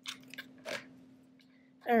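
Handling noise: a few short rustles and scrapes in the first second as felt ears are pressed onto a terry-cloth sock with a hot glue gun, which is then set down on the table. A faint steady hum runs underneath.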